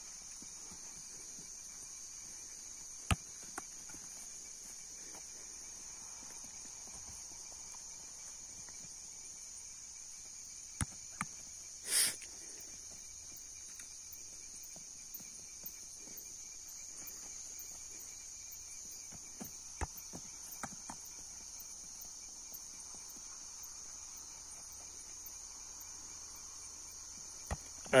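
A steady, high-pitched chorus of night insects, with scattered short knocks and thuds, the loudest a brief burst about twelve seconds in.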